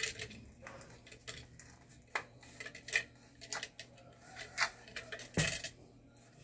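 Pressure-cooker lid handled while its rubber sealing gasket is pressed into place: scattered light metallic clinks and taps, with one louder knock near the end.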